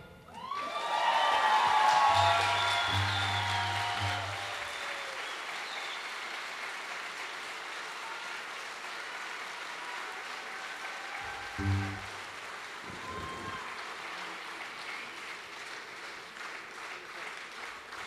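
Concert audience applauding at the end of a song. The applause is loudest about two seconds in, then thins out to steady clapping.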